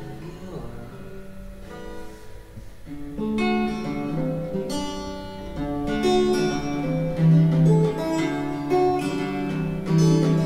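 Acoustic guitar music from a band recording, without vocals: quiet for the first few seconds, then picked and strummed notes that grow louder from about three seconds in.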